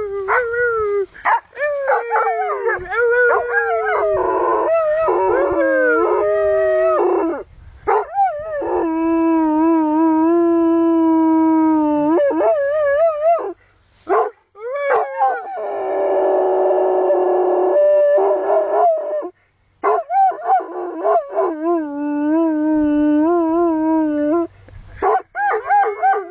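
Plott hound howling: a string of long, drawn-out howls, each held for several seconds with a wavering pitch and broken by short pauses. One howl midway is rougher and hoarser.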